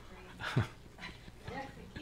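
Brief voices from the congregation answering the pastor: a few short exclamations, the loudest a call that slides down in pitch about half a second in.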